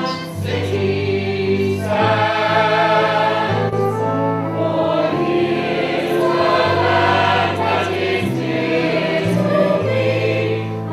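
A musical-theatre chorus: a choir singing sustained chords over an instrumental accompaniment, with the bass notes moving every second or so.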